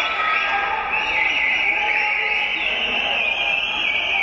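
A loud, steady electronic buzzer sounds from about a second in and holds for roughly three seconds, over a shouting crowd. It marks the end of the round.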